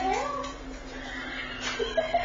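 An agitated dog whining, a high cry that wavers up and down near the start, then fainter.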